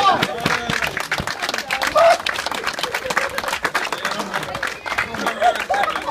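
A small group clapping in quick, uneven claps, with laughter and short cries breaking through near the start, about two seconds in and again near the end.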